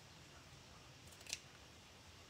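Near silence, with a few faint ticks and then one short, sharp click a little over a second in, from small craft tools being handled at the table.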